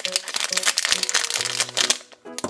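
A foil blind bag crinkling continuously as fingers handle and open it, over a soft background tune.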